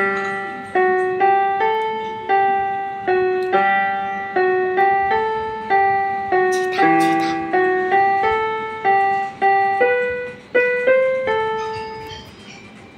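Casio mini keyboard played one note at a time, a simple melody of about two notes a second, each note struck and then fading. The playing stops shortly before the end.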